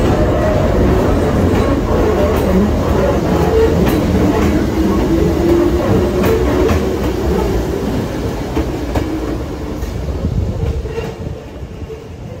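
Hakone Tozan Railway electric train running, heard on board: a steady rumble with a faint motor hum and a few wheel clicks. It dies down over the last couple of seconds.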